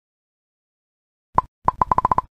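Cartoon pop sound effects for thumbs-up 'like' icons popping onto the screen: silence, then one pop about one and a half seconds in, followed by a quick run of pops, about ten a second.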